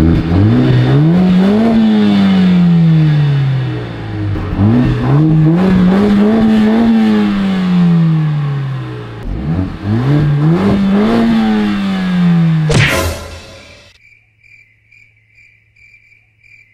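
Mercedes-AMG A45 S 2.0-litre turbocharged four-cylinder (M139) revved three times at standstill through its quad exhaust. Each time the pitch climbs for about two seconds and falls back more slowly. A sharp crack comes as the last rev drops, and then a cut to cricket chirps pulsing steadily.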